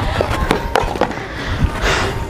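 A run of sharp knocks and clatters of plastic being handled, as a plastic conical hat is taken off and set down on a blue plastic water container in a wooden crate.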